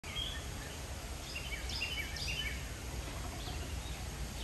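Small birds chirping, a quick run of short, high notes in the first half and a few more near the end, over a steady low rumble of outdoor background noise.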